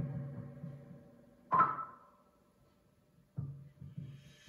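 A lull between songs: faint held tones fade away, a single note is struck and rings out briefly about one and a half seconds in, and a few low knocks come near the end.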